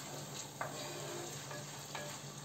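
Chicken pieces sizzling as they brown in an enamel pot, stirred with a wooden spoon, with a couple of brief scrapes of the spoon against the pot.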